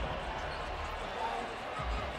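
Basketball arena ambience during a stoppage in play: a steady low hum of court and crowd noise with faint voices, and a low thud at the start and another near the end.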